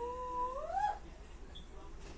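A short vocal sound about a second long: it holds a steady pitch, then rises sharply at the end and stops.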